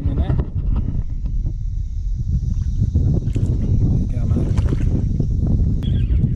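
Wind buffeting the microphone, a steady low rumble, with a few short knocks and clicks as a landing net and fishing gear are handled aboard a sit-on kayak.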